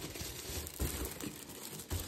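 Paper and cardboard packaging rustling and crinkling as a doll box is slid out of its shipping box, with a couple of light knocks.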